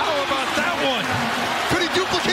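Live basketball court sound: sneakers squeaking in short chirps on the hardwood and a ball bouncing over steady arena crowd noise.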